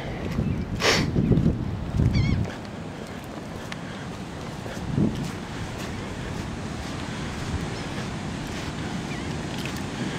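Steady rushing noise of ocean surf and light wind. The first couple of seconds hold a knock and low rumbling thumps, and there is a brief wavering bird call about two seconds in.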